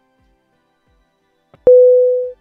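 WeChat call's no-answer tone: after a pause, a single loud, steady beep about one and a half seconds in, signalling that the outgoing call went unanswered.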